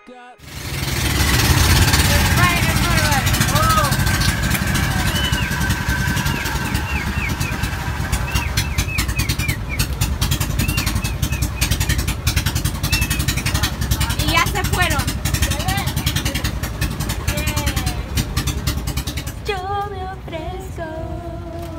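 Motorised outrigger boat's engine running loud and steady under way, with the rush of water and wind, and voices calling out over it now and then.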